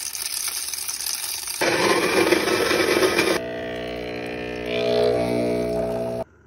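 Krups electric burr coffee grinder running for the first three and a half seconds, getting louder partway through. Then an espresso machine's pump hums steadily while a shot pours.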